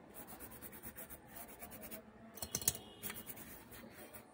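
Toothbrush bristles scrubbing a graphics card's circuit board in quick back-and-forth strokes, with a few louder scrapes a little past the middle. It is cleaning water-damage residue off the board.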